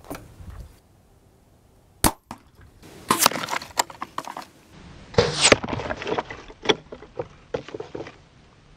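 APA Mamba 34 compound bow shooting an arrow into a gel block and moose shoulder blade: one sharp crack about two seconds in as the arrow is released and strikes. It is followed by several louder bouts of clattering knocks and scattered clicks.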